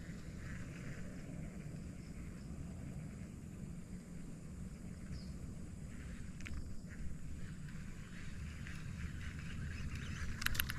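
Faint, steady outdoor background noise with a low rumble and no distinct event, apart from a few faint ticks about two-thirds of the way through.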